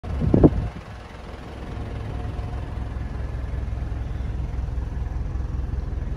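Ford Everest's 2.5-litre diesel engine idling steadily, a low, even rumble heard from inside the cabin, with a brief loud sound in the first half-second.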